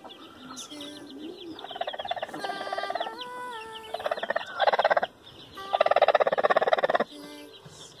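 A broody hen calling in several bursts of rapid, pulsing sound, the loudest about four and a half and six seconds in.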